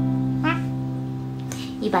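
The final strummed chord of an acoustic guitar ringing on and slowly fading, with a brief high rising vocal sound about half a second in. A woman's speech begins near the end.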